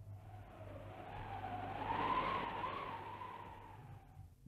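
A rushing sound effect that swells to a peak about two seconds in and fades away, with a faint wavering tone inside it, over a steady low hum.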